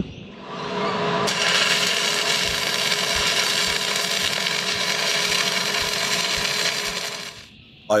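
Stick (arc) welding a steel bracket: a steady crackling hiss from the arc that strikes up about a second in and cuts off near the end.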